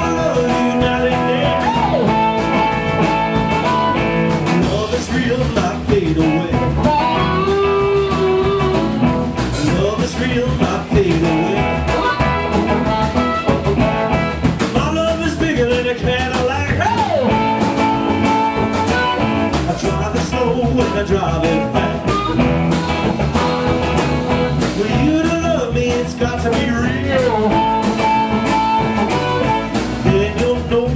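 Live blues-rock band playing with harmonica, electric guitar, bass and drums. A lead line bends up and down in pitch over held chords.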